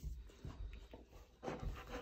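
Soft rustling and rubbing with a few low bumps, as a golden retriever's head and fur brush against the side of a mesh playpen while a hand holds it back.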